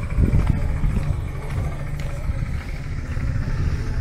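Low, uneven rumble of motor vehicles in the street.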